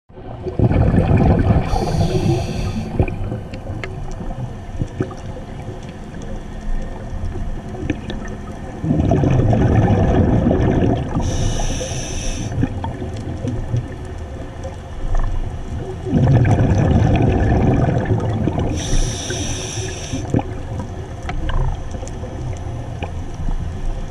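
Scuba regulator breathing heard underwater: three slow breath cycles, each a low bubbling rumble of exhaled air with a short high hiss from the regulator as air is drawn in, about every seven to eight seconds.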